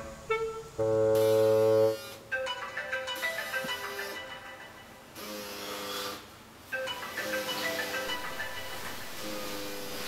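iPhone ringing with an incoming call: a loud held tone about a second in, then a ringtone melody repeating in short phrases.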